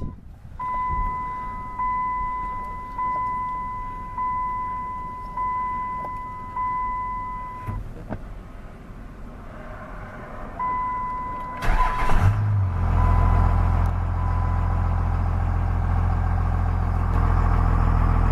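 The dash warning chime of a 1999 Dodge Ram 2500 sounds at key-on, one steady tone restruck about six times a little over a second apart. After a pause it sounds once more, then the starter cranks briefly. The truck's 5.9-litre Cummins turbodiesel catches and settles into a steady diesel idle.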